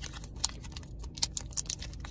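Foil Pokémon card booster pack wrapper crinkling and crackling in the fingers as it is opened: a run of irregular small clicks, a few sharper ones standing out.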